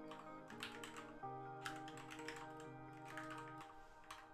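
Computer keyboard being typed on in several short bursts of clicks, over soft background music.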